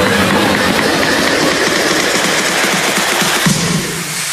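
Loud sound effect of dense rushing, crackling noise with little bass, the kind laid under a 'boom' title card; music comes back in near the end.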